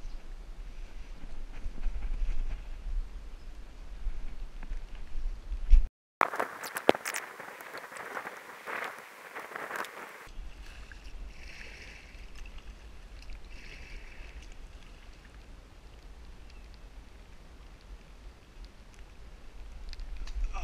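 Fast, flood-swollen creek water rushing around a kayak, with a steady low rumble of wind on the microphone. About six seconds in comes a loud burst of splashing and crackling right at the microphone, lasting about four seconds; after it the rush of water goes on more quietly.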